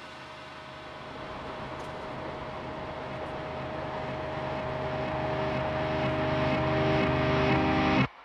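Symphonic metal song intro: a dense droning swell with a held tone that grows steadily louder throughout, then cuts off suddenly at the very end.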